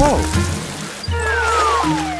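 A cartoon sound effect: a single whistle tone sliding steadily downward in pitch for nearly a second, starting about a second in, over background music with held notes. A brief voiced exclamation is heard at the very start.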